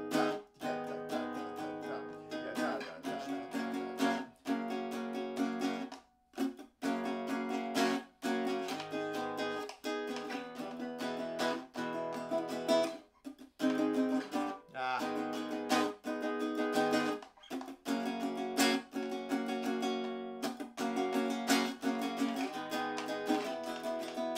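Nylon-string acoustic-electric guitar strummed in a syncopated down-up pattern through the chords E major, G-sharp minor and F-sharp major. Crisp accented strums ring on between them, with a few short breaks between phrases.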